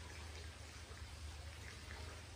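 Quiet background: a steady low hum with a faint even hiss, and no distinct sound events.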